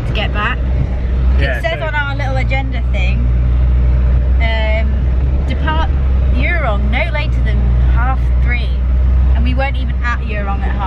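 Steady low rumble of a 4x4 on the move, heard from inside the cabin, under a woman talking.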